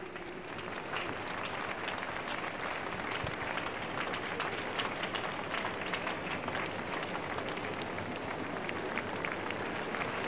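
A large audience applauding, dense clapping held at a steady level.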